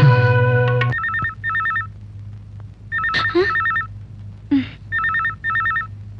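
Telephone ringing in a double-ring pattern: two short trilling rings, repeated about every two seconds, starting about a second in as the music cuts off. A few short whooshing noises fall between the rings, over a low steady hum.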